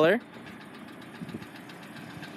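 A 2013 Hyundai Elantra GL's four-cylinder engine idling steadily, heard from outside the car.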